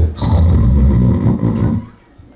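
A man making a long, loud mock snore into a microphone, lasting about a second and a half, as a joke about boredom.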